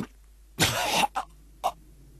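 Animated character's dubbed coughing: one rough cough of about half a second, then two short ones, as he coughs up blood.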